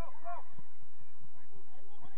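Children's high-pitched shouts and calls on a football pitch: a few short calls that rise and fall in pitch in the first half-second, then fainter calls, over a low rumble.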